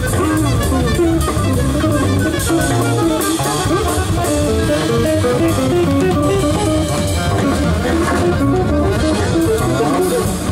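Jazz quartet playing live: alto saxophone, electric guitar, plucked double bass and drum kit, with quick runs of notes over the walking low end.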